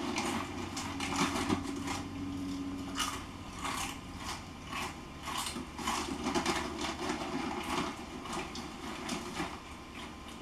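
A crinkly bag of Dipsy Doodles corn chips crackling in irregular bursts as it is handled and reached into, with crunching of the chips being eaten near the end.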